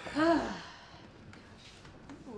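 A person's short voiced sigh, about half a second long, rising then falling in pitch, followed by quiet room sound.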